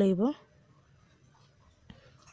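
A woman says one short word at the start, then faint handling of the cloth and a cloth tape measure while she measures the fabric, with one small click just before the end.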